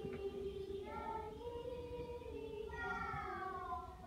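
A high voice singing without clear words: held notes with sliding pitch, falling on a long slide near the end.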